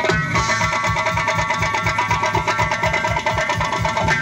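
Doira frame drums played together in a fast, even rhythm under a held melody from the band.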